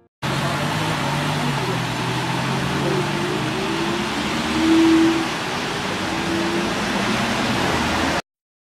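Street traffic: cars driving past on a city road, a steady rush of tyres and engines with a low engine hum. It swells as a vehicle passes about five seconds in, and starts and stops abruptly.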